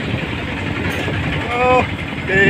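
Steady low rumble of a small goods truck's engine and road noise, heard from its open load bed while it drives, with a short pitched call about one and a half seconds in.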